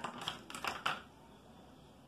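Thin clear plastic craft mould clicking and crackling under a hand as biscuit clay is pressed into it: a quick run of about half a dozen sharp clicks in the first second.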